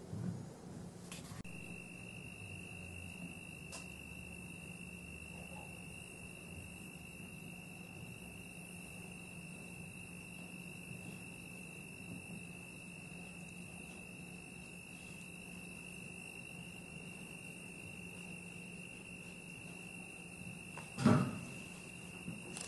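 A steady high-pitched tone with a low hum beneath it in a quiet theatre. About a second before the end, a single loud thump as a person sits down on a metal park bench.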